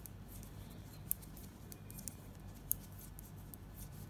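Faint clicks and ticks of knitting needles working stitches in a strip of cloth, with two sharper clicks, one about a second in and one near three seconds in.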